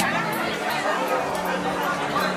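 Chatter of many diners talking at once at banquet tables in a large hall, with music faintly underneath.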